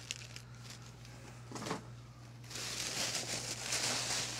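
Packaging rustling and crinkling as items are handled and pulled out of a shipping box. It is faint with a few light knocks at first, then turns into a steady, somewhat louder crinkling about halfway through.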